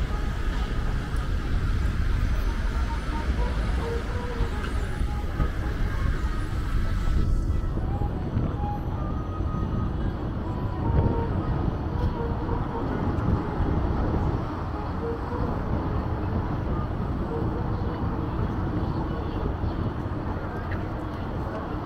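Busy city street ambience: a steady low rumble of road traffic with vehicles passing close by, and pedestrians' voices mixed in.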